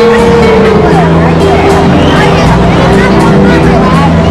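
Loud live band music, with held notes over a steady bass line.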